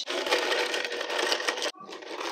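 Crackers rattling in a clear plastic tub as they are tipped out onto plates: a dense crackling clatter that stops briefly near the end and starts again.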